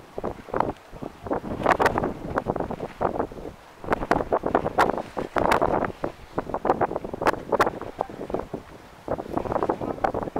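Wind buffeting the camera microphone in uneven gusts, with crackling bursts.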